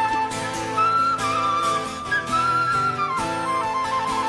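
A flute playing a slow melody of long held notes with small slides between them, over a rock band's steady accompaniment with acoustic guitar.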